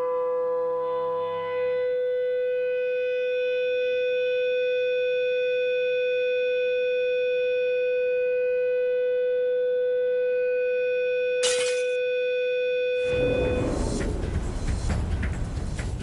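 Guitar playing the wine glass's resonant note through a loudspeaker aimed at the glass: one loud, steady tone with overtones, held for about thirteen seconds, while a pencil touching the glass damps its resonance. A brief click comes shortly before the tone stops, and a rushing noise takes over near the end.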